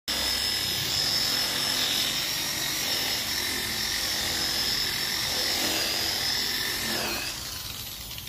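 Corded Ryu electric rotary polisher running with a steady high whine, its foam pad buffing the clear-coated motorcycle fuel tank. About seven seconds in the whine drops in pitch and fades as the motor spins down.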